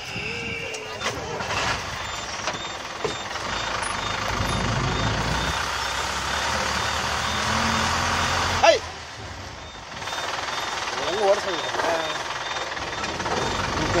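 A vehicle's engine and road noise heard from inside the cabin, building up steadily. There is a sharp knock about two-thirds of the way in, after which it drops quieter, and voices come in near the end.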